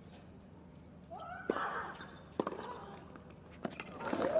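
Tennis ball struck by rackets: a serve hit with a player's short grunt, then sharp return and rally hits about a second apart, three in all.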